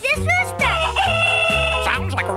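A rooster crowing: one long drawn-out crow starting about half a second in, over an upbeat jingle with a steady bass beat.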